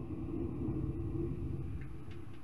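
A low, steady rumble of thunder, with the sound sitting deep and without clear strikes.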